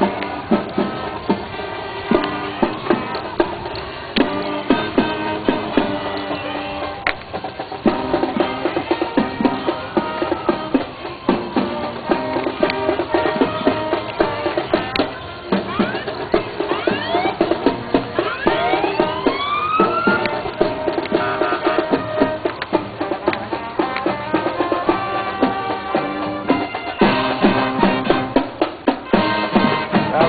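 Music with drums and percussion keeping a steady beat, with several sweeps rising in pitch about halfway through.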